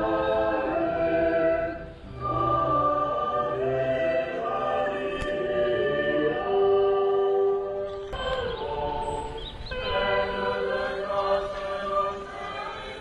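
A choir of voices singing a slow, hymn-like chant, with long held notes in phrases of a few seconds and short breaths between them.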